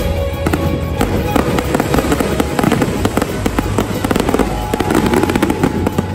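Fireworks display: a dense run of rapid crackling pops from bursting shells and crackle stars, thickest in the second half. It plays over loud dance music with a steady bass.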